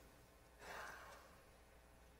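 Near silence with one faint breath from a man about half a second in, lasting under a second.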